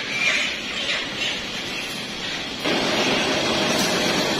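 Overhead poultry shackle conveyor line running, a steady mechanical noise with a short squeak near the start. About two and a half seconds in the sound jumps to a louder, steady machine noise with a faint hum.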